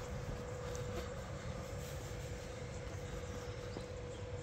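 Steady idling hum of parked, powered-up electric trains' onboard equipment: a constant mid-pitched tone over a low rumble, with a few faint ticks.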